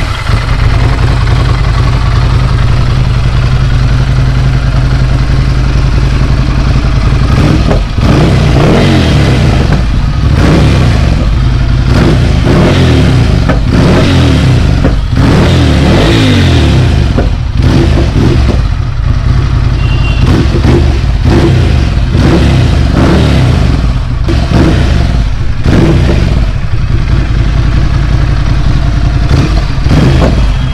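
2015 Ducati Scrambler's 803 cc air-cooled L-twin idling steadily for about eight seconds, then revved again and again with quick throttle blips, each rising and falling in pitch.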